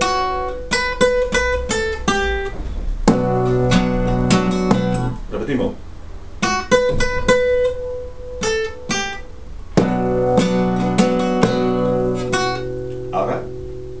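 Spanish-style acoustic guitar playing a picked rumba melody: runs of single plucked notes, broken by two fuller strummed chords that ring for a couple of seconds each, about three and ten seconds in.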